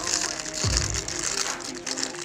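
Thin clear plastic bag crinkling and rustling as it is handled and opened around a Beyblade spinning top, over background music with a steady beat.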